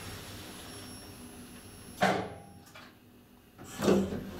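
KONE traction elevator car coming to a stop: the low ride noise fades, a sharp mechanical clunk comes about two seconds in, and after a brief near-quiet a second clunk and rising noise near the end as the door operator starts to open the car doors.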